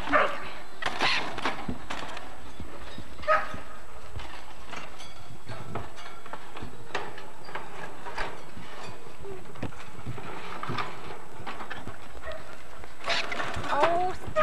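A few short animal calls over a steady hiss, with the calls coming near the start, about three seconds in, and again near the end.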